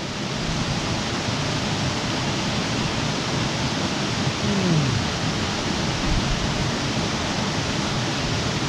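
Steady rushing of a small waterfall spilling into a rock pool.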